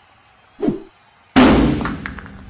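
A near-quiet pause, then a brief sound falling in pitch just after half a second. About a second and a half in comes a sudden loud bang-like burst that fades away over about half a second.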